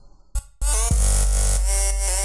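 EDM drop playing back: a short hit, then about half a second in a loud heavy 808 sub-bass with synth stabs and a beat comes in.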